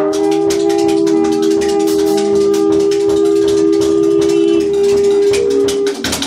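Improvised jazz: a saxophone holds long, sustained notes over busy, rapid percussion from the drummer.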